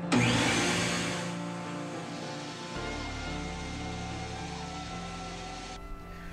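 Bandsaw winding down after a cut: a burst of machine and blade noise starts right at the beginning and fades away over about two seconds. Background music plays underneath.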